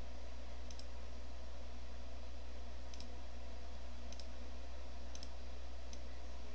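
Computer mouse clicking, about five separate clicks spread a second or so apart, over a steady low hum.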